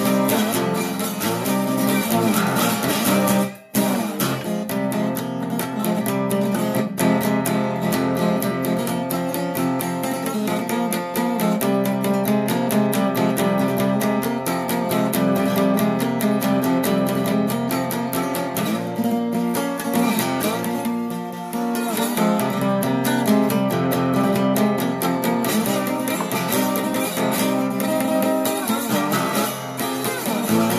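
1930 Regal resonator guitar played solo, with a continuous run of plucked notes, some of them gliding in pitch. It breaks off for a split second about three and a half seconds in.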